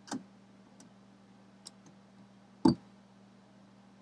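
Two small plastic dropper bottles handled in the hand, giving a few sharp clicks and taps, the loudest about two and a half seconds in, over a faint steady low hum.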